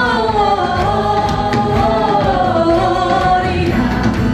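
Church worship team singing a Christmas hymn in Indonesian in several voices, led by a female singer, over live band accompaniment, holding long sung notes.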